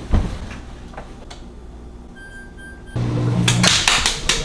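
A knock at the start, then a front-loading washing machine's control panel giving a few short electronic beeps as it is set going. From about three seconds in, music with a beat.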